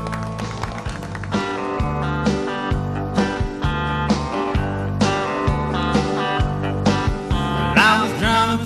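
Live country band playing: electric and acoustic guitars over bass and a drum kit keeping a steady beat.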